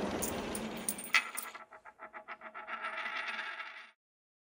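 Logo sound effect of coins: a noisy rushing swell, then a sharp metallic clink about a second in, followed by a quick run of coin clinks that settles into a ringing and cuts off just before the end.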